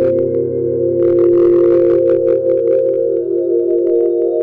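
Electronic music played by a DJ: a held synthesizer chord over a steady bass, with quick light percussion ticks and a short wash of noise about a second in. A higher note joins the chord near the end.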